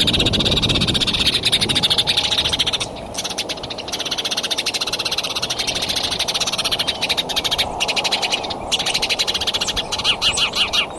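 A chorus of frogs trilling in fast, even pulses, with a few short gaps, and a low rustling in the first two seconds.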